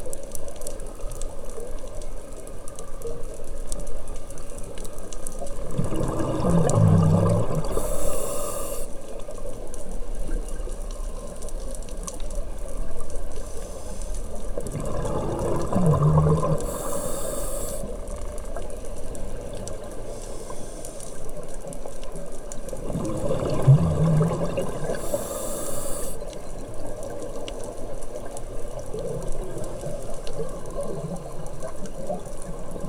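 Scuba breathing heard underwater through a diver's regulator: exhaled bubbles burble out, then the regulator hisses on the inhale. It repeats three times, roughly every eight to nine seconds, over a steady underwater hiss.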